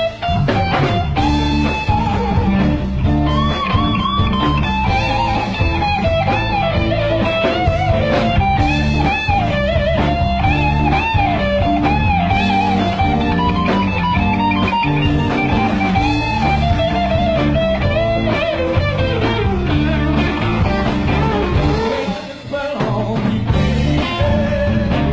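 Live blues-rock band playing an instrumental stretch: a lead electric guitar line with bent, wavering notes over bass guitar and drums. The band briefly drops out near the end, then comes back in.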